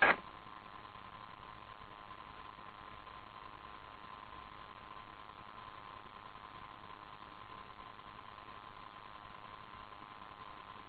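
Steady hiss of an air traffic control radio recording between transmissions, with a faint steady hum and no other events.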